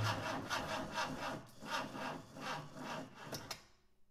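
A quick run of dry scraping strokes, about four a second, fading away to nothing near the end: the tail of the closing sound effect of the outro.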